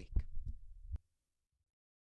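A few low, dull thumps in the first second, then the sound cuts off abruptly to dead silence.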